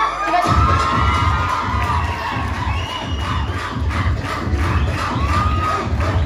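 A crowd of students cheering and shouting loudly, with high rising and falling yells. About half a second in, a heavy bass beat of dance music starts under the cheering.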